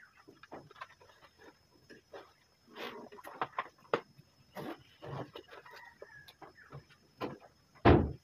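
Irregular short knocks and rustles of a bag and its contents being handled and packed, with farm fowl calling faintly in the background.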